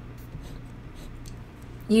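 Faint scratches and light ticks of a stylus drawing strokes on a Bamboo pen tablet, with a steady low hum underneath. A woman's voice starts at the very end.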